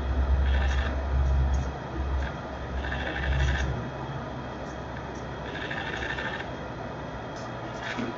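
A low rumble, louder in the first four seconds and then fading, with a few faint patches of higher hiss.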